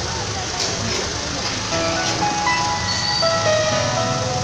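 Background music: a simple melody of held notes comes in about halfway through, over a steady hiss of outdoor noise and indistinct voices.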